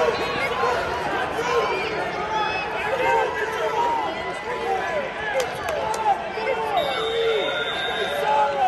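Crowd babble of many overlapping voices, spectators and coaches calling out at a wrestling meet over a steady crowd murmur.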